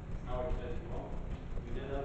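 Indistinct speech in a council chamber, a voice heard a little after the start and again near the end, over a steady low room rumble.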